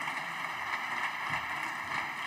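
Steady applause from a small group of parliamentarians, a thin even clatter of hand claps.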